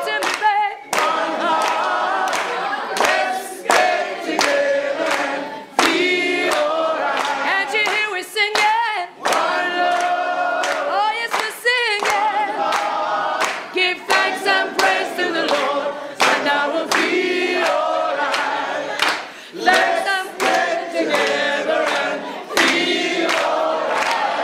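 A group of voices singing together in chorus, with hand claps keeping time.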